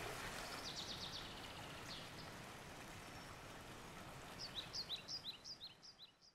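Quiet outdoor water ambience: a soft, fading wash of water lapping around a swimmer. A bird's high chirps sound over it, a quick run about a second in and a series of short falling chirps near the end.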